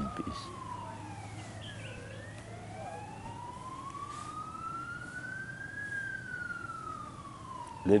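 A siren wailing slowly. Its pitch falls for about two seconds, climbs for about four, then falls again.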